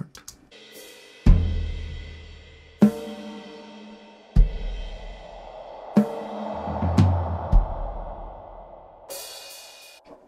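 Multitrack drum-kit recording played back from the mix session, quietly played: a few slow, sparse kick, snare and tom hits with cymbal wash. Each hit is left ringing in heavy reverb: very reverby, very watery, very spacey.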